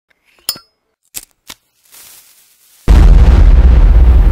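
Sound effects for an animated logo: a sharp clink with a brief high ring, two quick clicks, then about three seconds in a sudden loud, bass-heavy rumble that keeps going.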